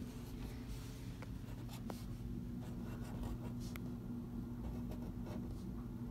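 Felt-tip marker scratching on cardboard in short, separate strokes as numbers are drawn, with a few light ticks as the tip lifts and touches down.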